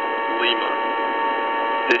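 HF single-sideband radio receiver hiss between transmitted words, held within a narrow voice band, with several steady tones running under it. A voice comes in right at the end.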